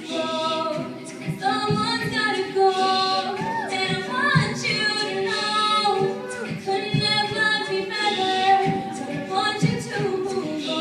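Live a cappella group singing: a female lead voice with a few melodic runs over sustained backing harmonies from the group, with a vocal-percussion beat thumping underneath.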